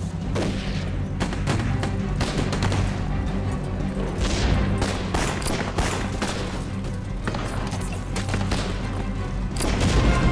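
Film gunfight: repeated rifle shots, some close together, over a dramatic orchestral score with sustained low notes.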